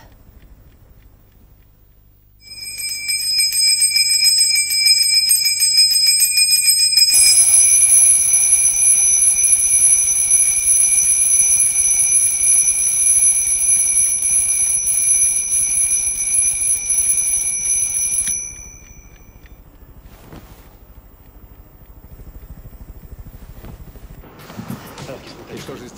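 Mechanical twin-bell alarm clock ringing loudly, its hammer rattling rapidly between the two bells. It starts about two seconds in, the pitch of the ring shifts about seven seconds in, and it cuts off suddenly near eighteen seconds, with the bells ringing on briefly.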